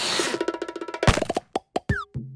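Cartoon sound-effect sting for a logo transition: a short whoosh, then a quick run of pitched pops, then a few separate sharp clicks and a short falling tone near the end.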